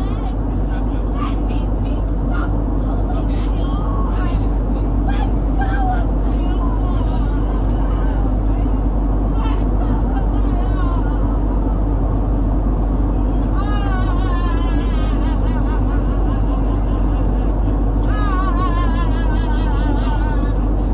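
Airliner cabin noise: a steady low drone from the jet's engines and air system, under raised passenger voices during a scuffle in the aisle. A high, wavering cry rises above the drone about 14 seconds in and again near the end.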